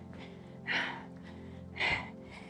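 Two short, sharp exhalations about a second apart, the breathing of a woman exerting herself in cardio exercise, over steady background music.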